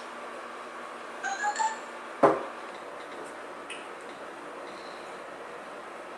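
Quiet room tone with a few brief high chirps about a second in, then a single sharp knock just after two seconds, the loudest sound, with a short ringing tail, like a glass bottle set down on a table.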